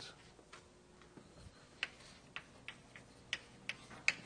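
Faint, sharp clicks and taps at an irregular pace, about seven of them spread over a few seconds, against quiet room tone.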